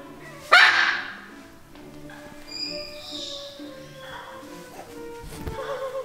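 A single loud, harsh macaw squawk about half a second in, over background music.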